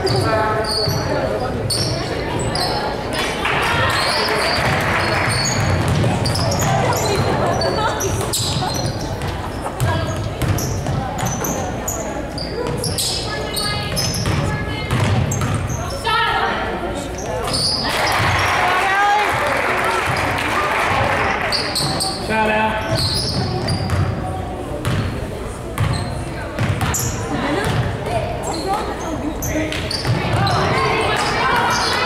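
Basketball game in a gym: a basketball bouncing on the hardwood floor among the players' footsteps, with players and spectators calling out. The voices swell a few seconds in and again just past the middle.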